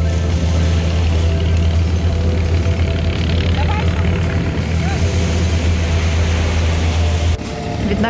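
Loud, steady low rumble of wind buffeting the microphone over a hiss of open beach air and surf. It cuts off suddenly near the end.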